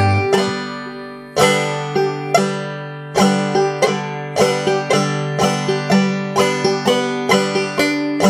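Five-string banjo played clawhammer style, picking the bum-ditty pattern slowly and steadily: single struck notes alternating with full brush strokes across the strings.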